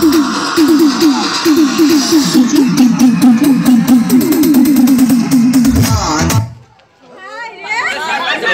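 Loud dance music over a sound system, driven by a fast repeating low figure of falling notes. It cuts out abruptly about six and a half seconds in, then comes back with quick up-and-down warbling notes.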